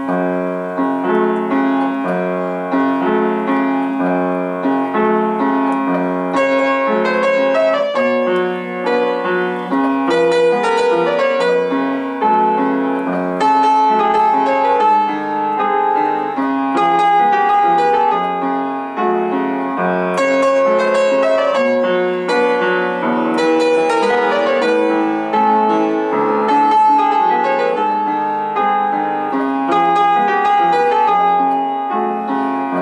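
Upright piano played live: a Georgian tango from an old Georgian film. Steady repeated chords in the bass carry a melody above, without a break.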